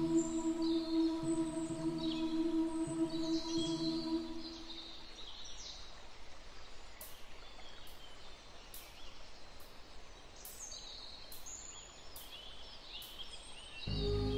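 Small birds chirping over a steady outdoor hiss of recorded nature ambience. Sustained ambient music tones fade out about four to five seconds in, leaving the birdsong and hiss on their own.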